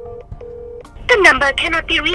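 Phone ringback tone: a steady tone in short double pulses. About a second in, a recorded network voice message cuts in saying the number cannot be reached, meaning the call has not gone through.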